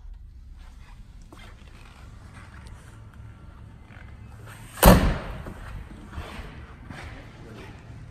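A single loud slam about five seconds in, with a short echo after it, over faint low voices.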